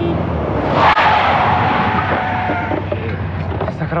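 A small open-top kit car's engine running as it pulls up, its tyres squealing under hard braking for about two seconds from about a second in, the squeal sliding down in pitch as the car stops.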